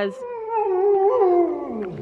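A dog giving one long whining howl that holds its pitch, then slides down near the end.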